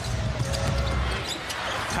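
Arena crowd noise during live NBA play, with a basketball being dribbled on the hardwood court.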